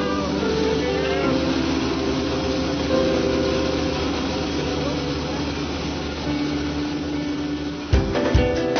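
Steady noise of an aircraft engine running, with held music chords underneath that change a few times.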